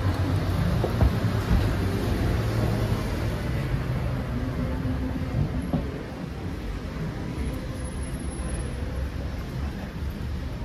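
City street ambience dominated by a steady low rumble of road traffic, easing off a little after about six seconds.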